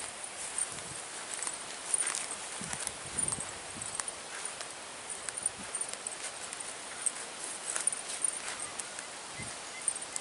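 Footsteps on grass and bare earth and the rustle of a bunch of freshly picked agathi leaves: light, irregular clicks and rustles over a steady outdoor hiss, with faint high chirps throughout.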